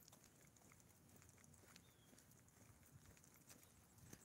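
Near silence: faint background with a few scattered faint clicks.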